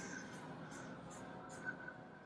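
Quiet store background: a faint steady hum with a few soft, brief handling noises.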